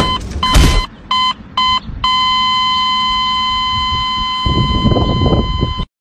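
Electronic beep tone: a few short beeps, then one long unbroken beep from about two seconds in that cuts off suddenly near the end. Heavy thumps sound under the early beeps.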